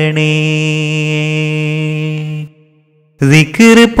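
A solo voice singing a Malayalam Islamic devotional (madh) song, holding one long steady note for about two and a half seconds. A brief silence follows, and the singing resumes with a new line near the end.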